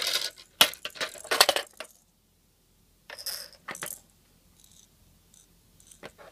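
A clear plastic sparkle ball clattering down the plastic ramps of a Kodomo Challenge baby Kororin House ball-drop toy: a quick run of hard clicks and knocks over the first two seconds, then a second short burst of knocks about three seconds in as it drops to a lower level.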